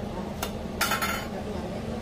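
Stainless-steel kitchen pans clinking: a light tap, then a short metallic clatter about a second in, over a steady low hum.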